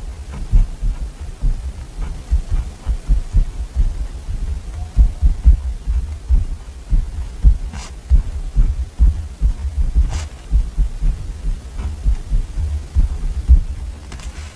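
Pen writing on a paper journal page, close-miked: a quick, irregular run of soft low taps from the pen strokes, with a few faint scratches of the nib on paper.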